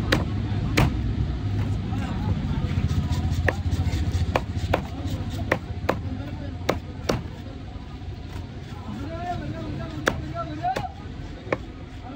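A large curved fish knife chopping through fish into a wooden log chopping block: sharp, irregular knocks, roughly one a second.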